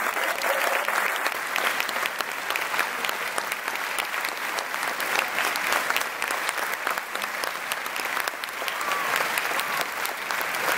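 Concert audience applauding steadily: a dense wash of many hands clapping that goes on without a break.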